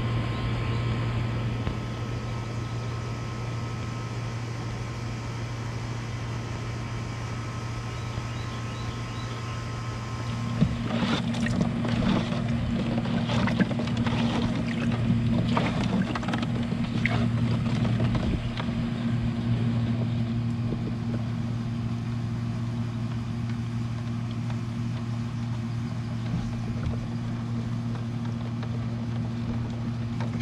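A steady low mechanical hum runs throughout. From about 11 to 19 seconds in, short splashes and sloshing as a hand stirs live crawfish in shallow salt water in a plastic cooler.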